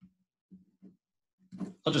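A few short, faint, low hums or mutters from a man's voice, then clear speech begins near the end.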